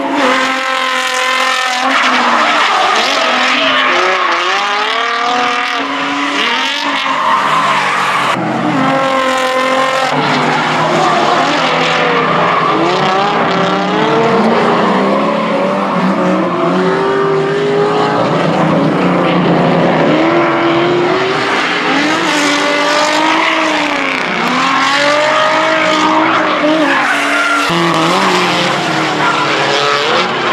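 Drift cars' engines revving hard, rising and falling in pitch as they slide sideways through a corner, with tyres screeching. Loud and continuous, with several engines heard one after another.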